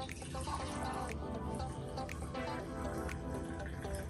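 Background music, with hot coffee pouring from a glass carafe into a ceramic mug.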